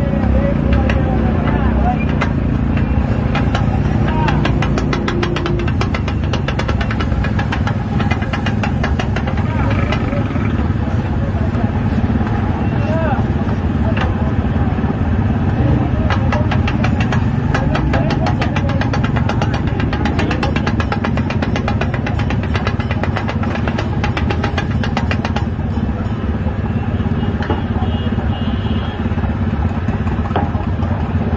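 A metal spatula striking a large flat griddle (tawa) in quick, repeated clinks as minced meat is chopped and stirred. Behind it run a steady hum of street traffic with motorcycle engines and the chatter of voices.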